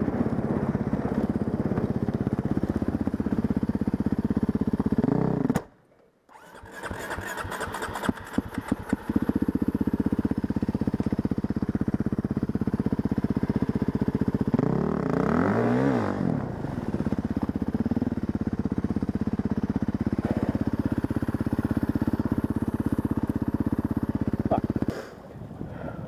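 Husqvarna dirt bike engine running, cutting out about six seconds in, then stuttering back to life over the next couple of seconds and running on steadily. About fifteen seconds in it revs up briefly.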